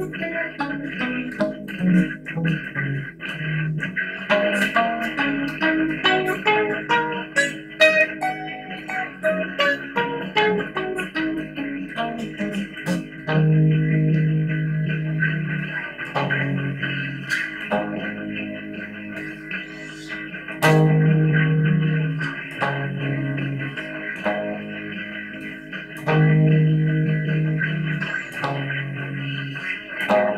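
Guitar playing the A minor pentatonic scale one note at a time, running down, up and down again. After about thirteen seconds it moves into a repeating figure of held low notes and chords.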